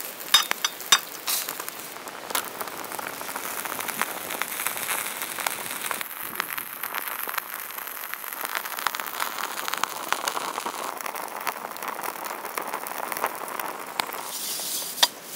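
Fish fillets and potatoes sizzling in a hot pan: a steady crackling hiss. A few sharp clinks of a metal spoon and knife against the pan in the first two seconds.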